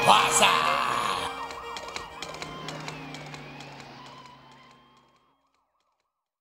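A country band's closing chord dies away in the first second while a police siren effect wails up and down, fading out by about five seconds in.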